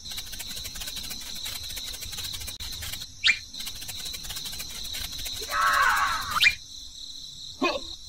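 Rapid, steady insect-like chirring, like crickets, which stops about six and a half seconds in. Short rising chirps come at about three seconds and again near six seconds, and a squealing cry is heard just before the chirring stops.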